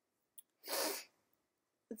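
A person's short, forceful burst of breath, a hissy puff of about half a second like a stifled sneeze, just after a small mouth click.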